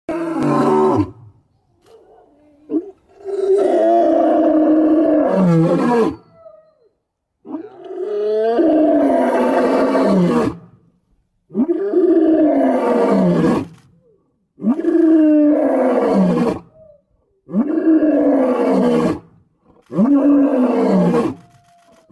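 A lion roaring: a series of about seven loud roars, each a couple of seconds long and falling in pitch at its end, with short pauses between.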